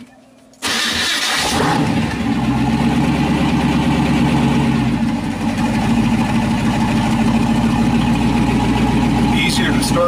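The 1934 Ford pickup's hot-rod engine, fed by a tunnel ram and two Holley 450 four-barrel carburetors, starting about half a second in. It fires almost at once with a short loud burst, then settles into a steady idle.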